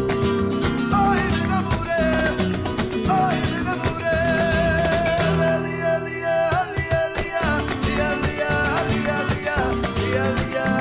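Background flamenco rumba music with guitar playing throughout.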